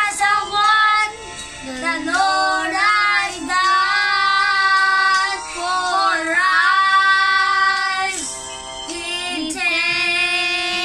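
Two young boys singing together, phrases with long held notes.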